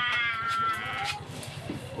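A young boy's voice holding one long, high, wavering note for about a second, a drawn-out playful wail, then trailing off quieter.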